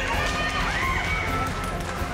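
Ice hockey game sound inside an arena: skate blades on the ice, with shouts from players and spectators over music.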